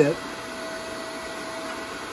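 The electric motor and hydraulic pump of a portable horizontal hydraulic bender running steadily, with a faint steady whine, while the ram bends a flat steel bar.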